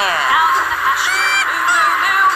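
A toy excavator's electronic sound effects played through its small speaker: quick falling and rising tones, several a second, over a steady hiss.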